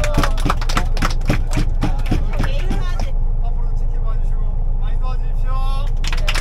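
Steady low rumble of a coach bus heard from inside the passenger cabin, with a quick run of sharp taps through the first three seconds.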